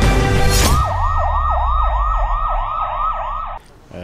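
Music for the first moment, then an emergency siren rapidly rising and falling in a yelp pattern, about three cycles a second. It cuts off suddenly shortly before the end.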